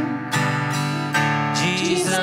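Live worship music: an acoustic guitar strumming chords under singers holding slow, sustained notes of a worship song. A new chord is struck about a third of a second in and again just past one second.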